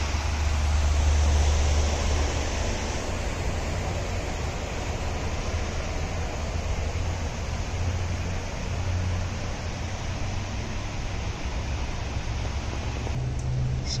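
Steady rushing background noise with a low, wavering rumble, loudest in the first couple of seconds.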